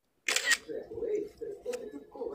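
Quiet, indistinct talk over a video call, opening with a short sharp click-like burst about a third of a second in.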